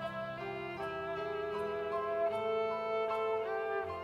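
A violin played with vibrato, carrying a melody of held notes that change every half-second or so, over a steady lower accompaniment in a small ensemble.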